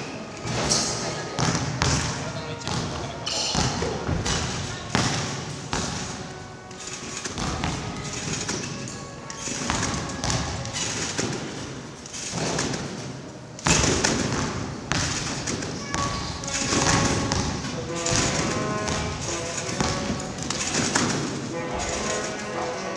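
Competition trampoline bed thumping again and again as a gymnast bounces on it, with music and voices in the background.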